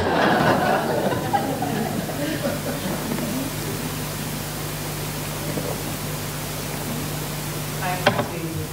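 Audience laughter and scattered hand clapping dying away over the first couple of seconds, leaving a low, steady hum under the room noise.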